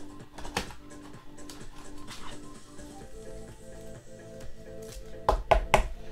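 Soft background music with held tones under light handling clicks. Near the end comes a quick run of sharp plastic taps as a sleeved trading card is slid into a rigid plastic toploader.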